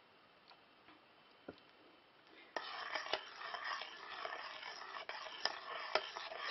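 Near silence for about two and a half seconds, then a spoon stirring and scraping in a stainless steel pot, with many small irregular clicks.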